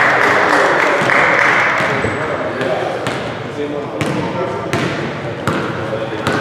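Basketball bounced on a hardwood gym floor, a few single knocks in the second half, as the ball is dribbled up the court. Players' voices and court noise underneath, loudest in the first two seconds.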